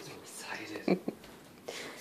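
A person speaking softly, almost in a whisper, in short phrases, loudest about a second in.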